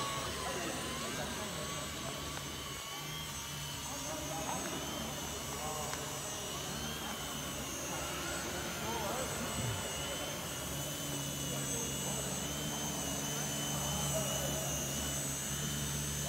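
Small electric motor and propeller of an indoor foam RC plane, a HobbyKing Volador, whining steadily in flight, its pitch wavering slightly with throttle. A low steady hum runs underneath.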